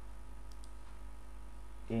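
Two faint computer mouse clicks in quick succession about half a second in, over a steady low electrical hum from the recording.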